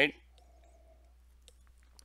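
Near silence: quiet room tone with three faint, short clicks, after the tail of a spoken word.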